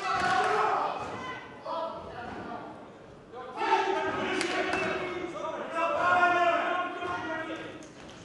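Men's voices shouting in a large echoing hall around a kickboxing ring, with a few dull thuds from the ring.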